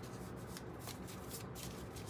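A deck of tarot cards being shuffled by hand: a quiet, irregular run of short card flicks, several a second.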